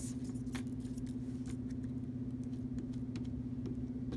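A steady low hum throughout, with a few faint soft scrapes and ticks of a glue stick being rubbed over paper.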